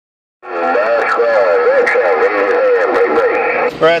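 An incoming transmission over a President HR2510 radio's speaker: a garbled, warbling voice with steady tones under it. It starts about half a second in and cuts off abruptly just before a clearer voice begins near the end.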